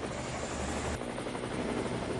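A steady, noisy rushing sound effect under a TV title card, its deep rumble dropping away about a second in.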